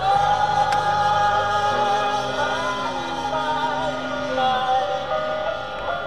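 Music from a car radio heard inside the cabin: voices singing long held notes over a steady accompaniment.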